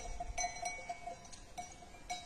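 Bells on a grazing flock of sheep clinking faintly and irregularly, several light ringing clinks over two seconds.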